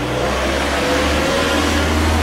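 Loud, steady low rumble of a running vehicle, growing slightly louder.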